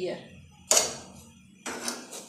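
Metal kitchen tongs knocking and scraping against a gas burner's grate as a roti is turned over the open flame: two short hard noises, one under a second in that fades quickly and a shorter one near the end.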